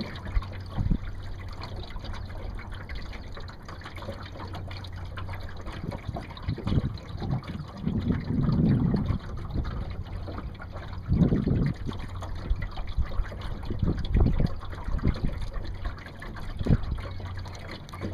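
Water lapping and sloshing against the hull of a small boat in irregular swells, over a steady low hum.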